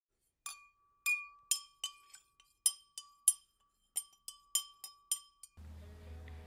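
Intro logo sting of light, glassy clinks: about a dozen quick strikes at uneven spacing over a faint steady high note. A low room hum comes in near the end.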